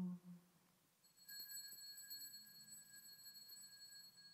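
Altar bell struck once about a second in, its clear high ring slowly fading: the bell rung at the elevation of the host during the consecration.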